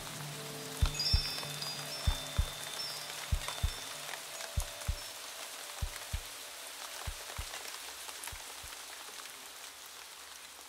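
Recorded rain falling steadily, with low drum hits in pairs and a held musical drone that fade away, as a world-music track winds down.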